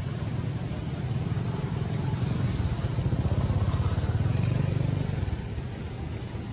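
A low, pulsing motor-vehicle engine rumble, growing louder from about two seconds in and easing off near the end, like a vehicle passing by.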